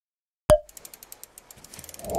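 Logo-animation sound effect: a sharp hit about half a second in, followed by rapid mechanical ratchet-like clicking, about ten clicks a second, that thickens near the end.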